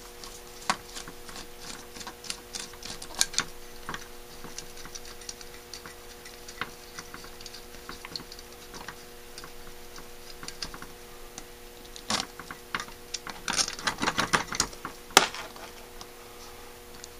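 A screwdriver clicking and scraping on the small steel screws of a Holley 1904 carburetor body as they are backed out: scattered light metallic ticks, then a busier run of clicks and rattles near the end. A faint steady hum sits under it.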